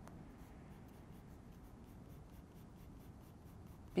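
Pencil scratching lightly on sketchbook paper in quick, repeated hatching strokes, a first light layer of shading. Faint throughout.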